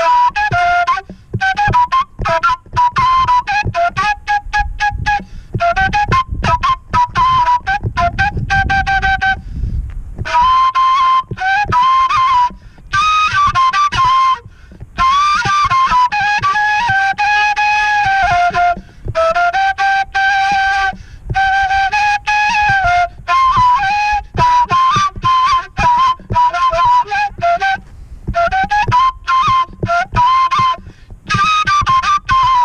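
Kaval, the Balkan end-blown flute, played solo: a lively ornamented folk melody in many short, separated notes, with a few longer held phrases about halfway through.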